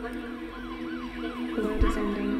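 A siren wailing rapidly up and down, about three times a second, over a steady low held chord, as part of a music video's cinematic intro. A short low boom hits near the end.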